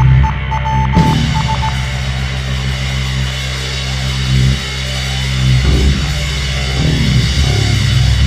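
Live rock band playing loud, distorted heavy guitar and bass, holding long low chords that change every second or so, with a high stuttering tone in the first two seconds.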